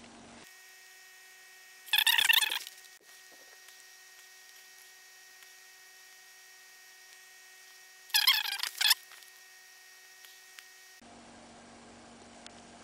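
Faint steady electrical hum made of several even tones. It is broken twice by a short, loud, high-pitched warbling burst, about two seconds in and again about eight seconds in.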